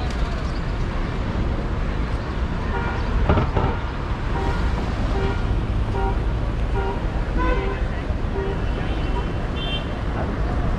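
City traffic with a vehicle horn tooting in a run of short, evenly spaced beeps, about two a second, starting about three seconds in and going on to near the end, over a steady low rumble of traffic.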